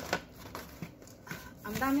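A flattened cardboard carton being picked up and handled: light rustling with a few sharp taps, the first right at the start.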